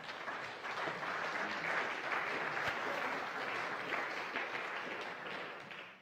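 Audience applause, many hands clapping, swelling over the first second and then holding steady before dropping away quickly at the very end.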